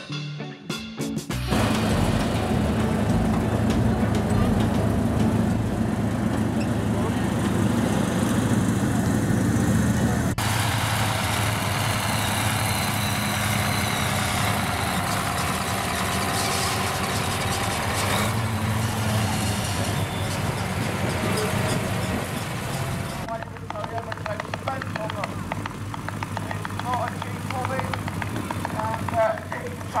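Diesel engine of a Massey Ferguson 4840 articulated tractor running at a steady low note. The revs rise briefly and fall back about two-thirds of the way through. Music cuts off at the very start, and a voice is faintly heard over the engine near the end.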